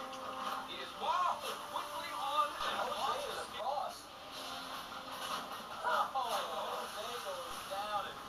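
Indistinct voices from a television programme, heard through the TV's speaker with strongly rising and falling pitch.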